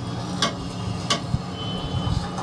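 A large wok of oil deep-frying kebabs over a steady low hum, with two sharp clicks of the metal ladle knocking against the wok.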